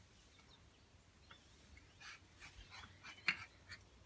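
Faint, scattered clicks and scuffs of miniature schnauzer puppies' claws and paws moving on a concrete porch, with one sharper click a little past three seconds in.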